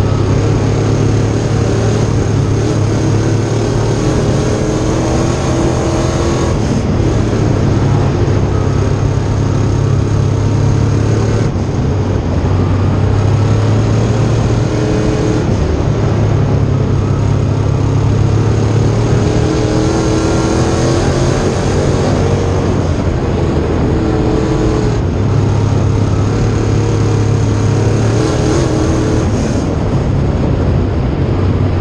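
Sportsman dirt late model's V8 engine heard from inside the car at racing speed, loud and steady, its pitch climbing under throttle and dropping off briefly several times as the driver lifts for the turns.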